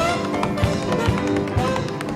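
Tap shoes striking a wooden stage in quick rhythmic taps over a live jazz band of saxophone, piano, bass and drums.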